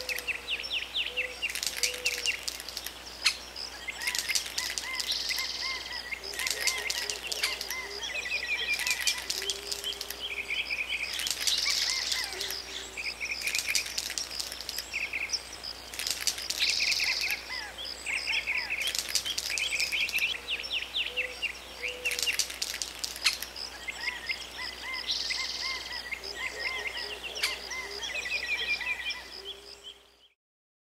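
Outdoor ambience of birds chirping and calling with insects, in repeated bursts of rapid, high trills every couple of seconds; it fades out at the very end.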